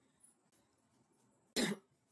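A man coughs once, briefly, about a second and a half in, against otherwise quiet room tone.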